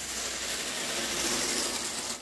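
Plastic carpet grooming rake dragged through Berber carpet loops, a steady scratching rub through one long unbroken stroke.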